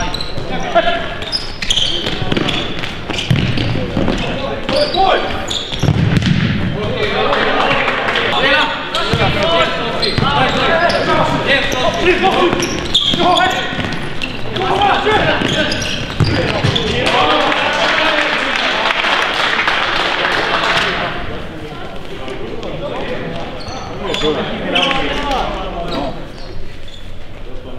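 Futsal game sounds in a sports hall: players' shouts and voices mixed with repeated thuds of the ball being kicked and bouncing on the hard court floor.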